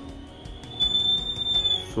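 Acoustic feedback from a condenser mic and small speaker on an LM386 amplifier module: a steady high-pitched whistle swells in partway through and fades near the end. The mic is picking up the speaker and the module's high gain sustains the loop.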